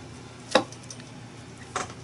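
Clear acrylic stamp block pressed down onto a paper tag on a hard table: a sharp knock about half a second in and a softer one near the end.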